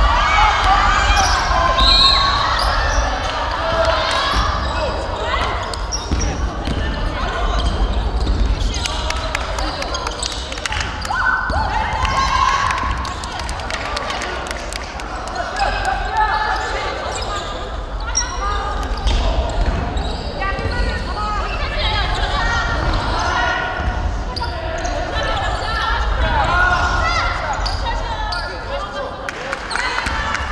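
A basketball bouncing on a hardwood gym floor, with scattered shouts and calls from players echoing around a large hall.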